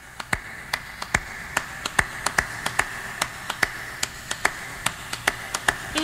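Surface noise of a 45 rpm vinyl single in the lead-in groove before the music starts: a steady hiss with sharp clicks and pops, two or three a second.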